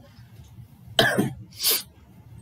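A man coughs once, sharply, about a second in, followed by a short hissing breath.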